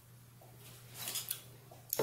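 Quiet eating sounds: a spoonful of dragon fruit in Coca-Cola being taken and chewed, with a few faint ticks of a spoon against the plate about a second in. A low steady hum runs underneath.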